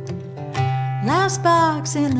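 Two steel-string acoustic guitars playing a folk song together. A woman's voice starts singing about a second in, sliding up into a held note.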